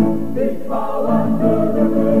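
Youth choir singing a Korean Christian praise song with instrumental accompaniment; the voices come in about half a second in over a sustained chord.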